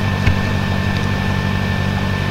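Steady low electrical or fan-like hum with a thin high steady tone above it, and one short click about a quarter second in.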